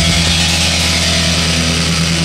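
A synthpunk band's distorted electric guitar and synthesizer holding a steady droning chord near the end of the song, with no drumbeat.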